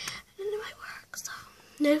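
A girl's soft, breathy whispering between phrases, with one short voiced sound about half a second in; she starts speaking aloud again near the end.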